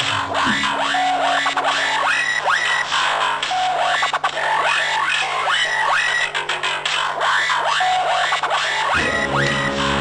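Electric guitar in rock music: low notes ring steadily under short, repeating downward-sweeping sounds, and a new, fuller chord comes in about nine seconds in.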